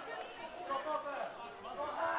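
Several distant voices calling and chattering at once across a football pitch, none of them loud or clear.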